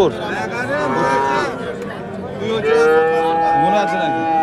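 Young cattle mooing. A call rises and falls in pitch in the first second or so, then a long, steady moo begins about two and a half seconds in.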